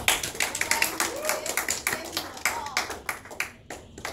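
Small audience clapping by hand, brisk and uneven, with a few voices mixed in; the clapping dies away near the end.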